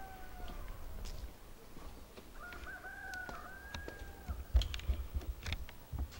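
A rooster crowing: the tail of one call fades out in the first second, then a second, held call of about two seconds comes in the middle. A few sharp knocks and low thumps follow near the end.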